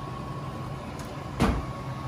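A single sharp knock about one and a half seconds in, over a steady low hum and a faint steady high tone.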